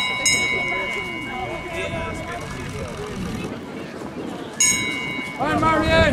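Trackside bell struck as runners go past: a strike right at the start, another about a third of a second in and a third just before 5 seconds, each ringing on with clear high tones that slowly fade, over spectator chatter.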